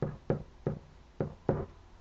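A pen knocking against the hard surface of an interactive whiteboard while a word is written: about five short, sharp taps, unevenly spaced.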